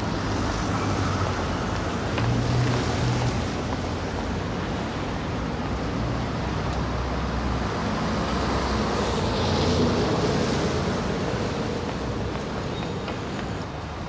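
Busy city street traffic: a steady rumble of car and bus engines, swelling as vehicles pass.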